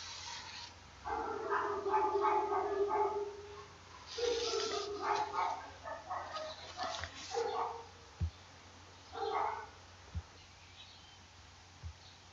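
A dog whining and barking in several drawn-out, high-pitched bursts over the first nine seconds or so, followed by a few soft low thumps.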